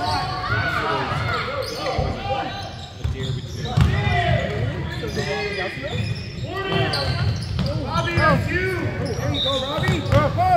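Basketball being dribbled and sneakers squeaking in short chirps on a hardwood gym floor, through a mix of players' and spectators' voices echoing around the gymnasium.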